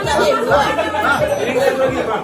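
Chatter of many diners talking over one another at their tables, a steady babble of overlapping voices.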